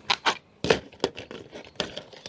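Plastic spring clamps and a clear plastic storage box being handled: about half a dozen short clicks and clatters, spaced irregularly.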